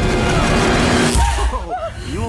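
Loud horror-trailer sound design: a dense noisy drone with steady held tones builds to a sweep about a second in, then turns into warbling, wavering screech-like tones over a deep rumble.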